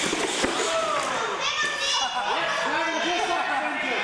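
Radio-controlled monster trucks racing on a concrete floor, a loud rushing whir of motors and tyres that began just before and carries through the first half. From about a second and a half in, excited voices, children among them, call out over it as the race finishes.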